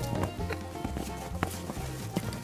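Wood campfire crackling, with scattered sharp pops over a low steady rumble.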